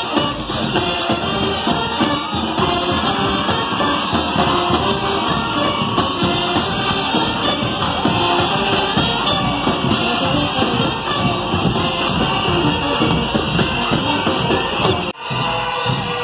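A brass band with trombones and low brass plays a lively tune while marching, with crowd noise around it. The sound breaks off sharply about a second before the end, then music carries on.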